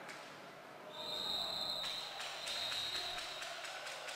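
A high, steady whistle blast lasting about two seconds, starting about a second in, over the noise of an arena crowd during a roller hockey game.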